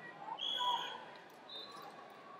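Referee's whistle: one short steady high blast that stops the wrestling, followed by a briefer high tone, over faint voices in a large hall.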